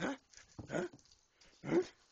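Young basset hound puppy giving three short barks in play, the last one loudest.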